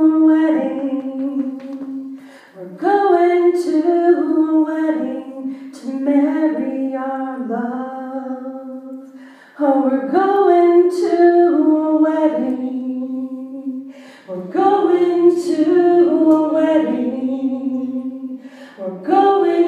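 A woman sings a worship song alone, with no accompaniment. Her phrases are long and held, each starting strong and trailing off, with short breaks between them.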